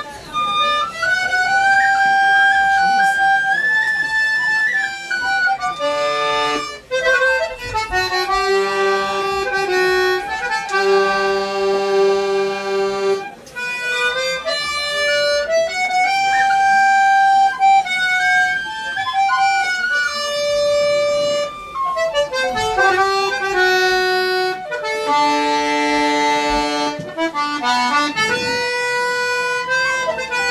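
Tin whistle and accordion playing an Irish traditional tune together: the whistle carries a stepping melody over the accordion's held reed notes.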